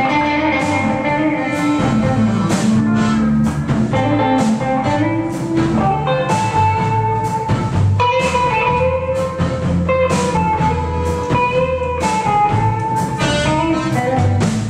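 Live blues band playing an instrumental intro: electric guitar lines over bass guitar and drum kit, with a steady beat.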